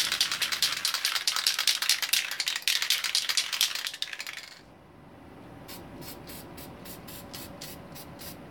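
Aerosol spray-paint can of oxide primer being shaken, its mixing ball rattling rapidly for about four and a half seconds. After a short pause come slower, evenly spaced rattles, about three a second.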